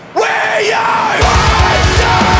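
Metalcore song: a screamed vocal rises out of a brief break in the band, and about a second later the full band with pounding drums and bass comes back in.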